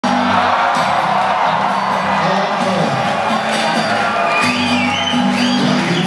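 Live band with drums and electric guitar playing loudly through a concert hall's PA, with the audience cheering over it. A few high sliding calls rise and fall above the music about four and a half seconds in.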